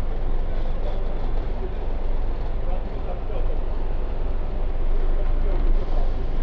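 Engine rumble and cabin noise inside a London double-decker bus moving slowly in traffic, a steady low drone, with passengers' voices in the background.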